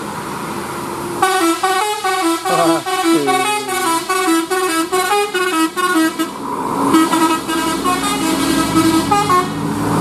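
Multi-tone musical bus horn (telolet) on a Mercedes-Benz OH1526 bus, playing a quick tune of short stepped notes starting about a second in, with a second, softer run of notes near the end.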